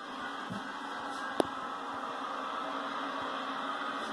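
Steady rushing background noise of stock cars running on track, heard through a televised race broadcast, with one sharp click about one and a half seconds in.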